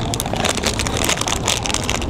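Blind-box packaging being handled and opened: a run of quick crinkles and crackles over a steady low rumble of wind on the microphone.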